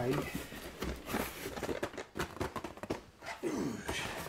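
Large cardboard boxes being shifted and handled, a run of short knocks and rustles.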